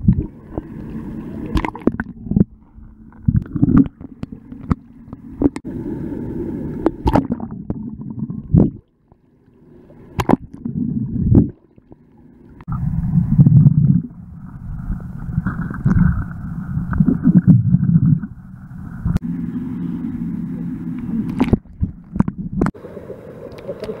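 Water sloshing and gurgling right at a camera microphone held at the surface by a swimmer, with scattered sharp splashes and a couple of short quiet gaps.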